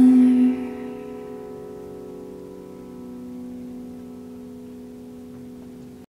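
A woman's last sung note ends about half a second in, leaving a grand piano chord held on the pedal and slowly fading away.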